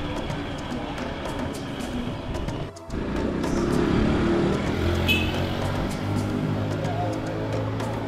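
Background music with held notes and a light beat. It drops out briefly about three seconds in.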